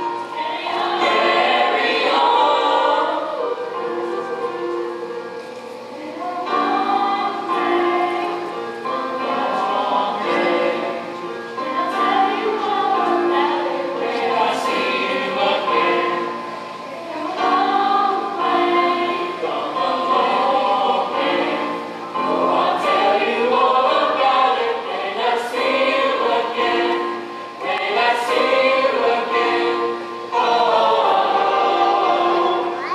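Middle-school chorus of boys' and girls' voices singing together, in phrases separated by brief dips in loudness.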